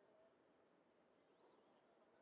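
Near silence: faint outdoor ambience, with one faint short chirp about one and a half seconds in.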